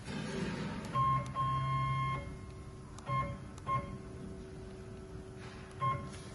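Stepper-driven axis motors of a CNC wood lathe being jogged from a handheld controller: a whining move about a second in that lasts nearly a second, then a few brief whining blips, over a steady low hum.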